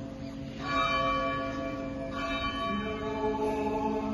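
Church bell tolling slowly: struck about two-thirds of a second in and again about a second and a half later, each strike ringing on with many overlapping tones. It is a slow mourning toll, as rung in Greek Orthodox churches for the Holy Thursday Crucifixion service.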